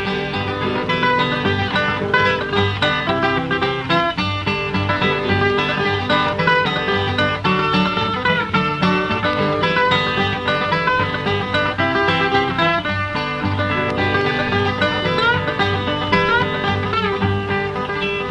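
Instrumental break of an old-time country duet, with no singing: a steel guitar played lap-style carries the melody with some gliding notes over a strummed acoustic guitar keeping a steady rhythm.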